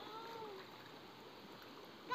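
Faint steady running of a shallow, stony river, with one short pitched call that rises and falls in the first moment.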